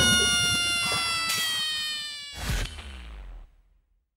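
Edited-in title-card sound effect: a bright held note of several tones that slowly slide downward in pitch and fade over about two seconds, then a second, softer hit with a falling low tone about two seconds in, dying away to silence shortly before the end.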